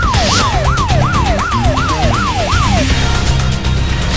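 Fast wailing siren sound effect: the pitch jumps up sharply and slides down again, two to three times a second. It plays over music with a heavy low beat and stops about three seconds in, leaving the music.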